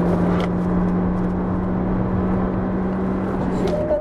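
Toyota Vitz hatchback's engine at speed on a circuit, heard from inside the cabin: one steady engine note over tyre and road noise, held until the note breaks off near the end.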